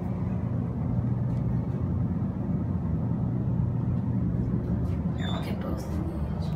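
Steady low hum of a hydraulic elevator, heard from inside the car while it runs.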